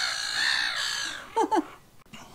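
A crow giving one long drawn-out caw that falls away a little over a second in, followed by a brief human vocal sound.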